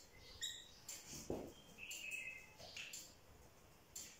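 Faint, short high squeaks of a whiteboard marker writing on the board, with a soft knock about a second in.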